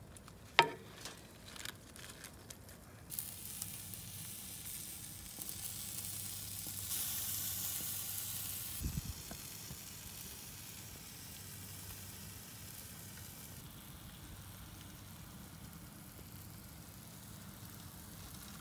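Corn on the cob basted with a coconut-milk sauce, sizzling on a hot grill grate, a little louder partway through. A sharp click about half a second in, with a few lighter clicks after it.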